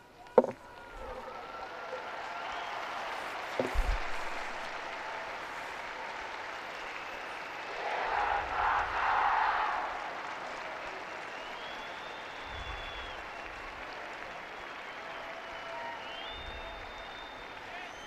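Large outdoor crowd applauding and cheering, a steady wash of clapping with scattered voices that swells about eight seconds in. There is a single sharp knock right at the start.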